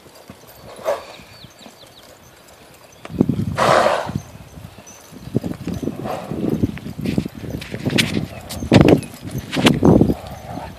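Hoofbeats of a horse cantering on a sand arena footing: an irregular run of thuds from about three seconds in. Near the end there are sharp knocks from the phone being handled.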